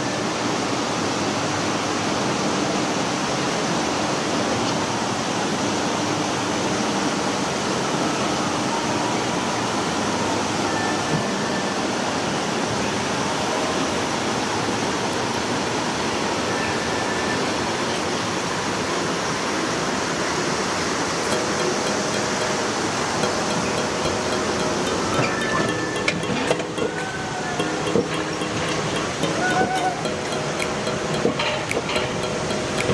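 Steady rushing noise of an alpine coaster cart rolling along its metal rail track, with faint tones coming and going over it.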